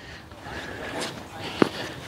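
A tennis ball struck once by a racket, a single sharp pop about one and a half seconds in, over faint background sound.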